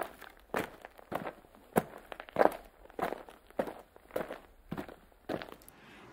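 Footsteps walking at an even pace, a little under two steps a second.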